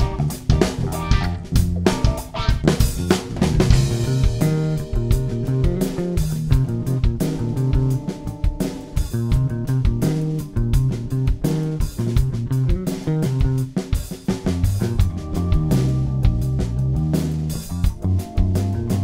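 Fender American Deluxe Dimension electric bass played fingerstyle, with a groove of changing low notes over a drum kit beat.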